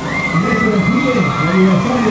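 A voice sounding throughout, with a steady high tone held from just after the start until shortly before the end.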